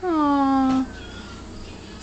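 A toddler's voice: one drawn-out wordless sound under a second long, sliding down a little in pitch, then quiet room sound.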